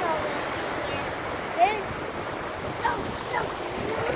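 Ocean surf washing up the beach in a steady rush. Over it come a few short, high-pitched voice cries, the loudest about one and a half seconds in.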